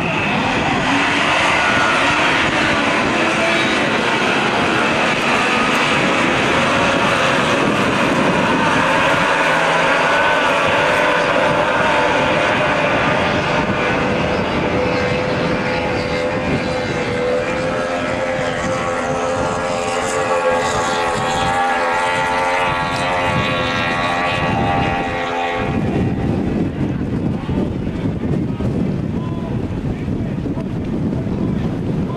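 Several racing tunnel boats' two-stroke outboard engines running at full throttle: overlapping high-pitched whines that shift in pitch as the boats pass. About four seconds before the end the engine sound drops away, leaving wind on the microphone.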